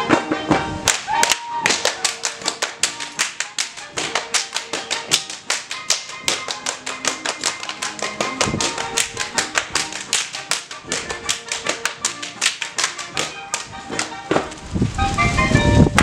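Schuhplattler dancers slapping their shoe soles, thighs and knees and clapping: a rapid, rhythmic string of sharp slaps, several a second, over waltz music.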